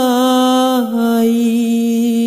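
Devotional shabad singing: one voice holds a long drawn-out vowel at the end of a line, with a small turn at the start and a step down to a slightly lower note a little under a second in.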